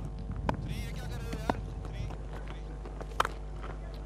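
Open-air cricket ground ambience with faint distant chatter, broken by a few short sharp knocks. The clearest comes about three seconds in: the bat striking the ball.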